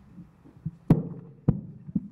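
Handling noise from a handheld microphone being picked up: two sharp knocks a little over half a second apart, then a softer one near the end.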